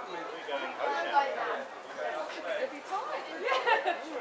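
Indistinct background chatter of several people talking at once, with no clear words.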